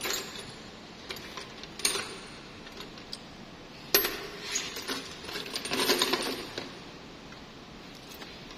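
Scattered sharp metallic clinks and taps from a flat screwdriver working against metal parts under a truck's dashboard. The loudest comes about four seconds in, followed by a flurry of lighter clinks.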